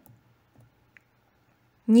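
Near silence with a faint low hum and a single faint click about a second in; a voice begins speaking just before the end.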